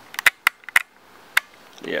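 A quick run of sharp clicks, about six in the first second and a half, from the camera being handled and its buttons pressed close to the microphone.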